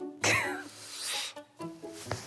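Light plucked background music, cut about a quarter second in by a loud, harsh burst whose pitch falls, then a second short burst about a second in before the music resumes.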